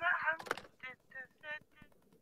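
A voice singing indistinctly over a telephone line in short, separate notes, with a single click about half a second in.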